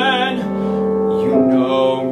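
Male voice singing long held notes with vibrato in musical-theatre style, over piano accompaniment, moving to a new note about halfway through.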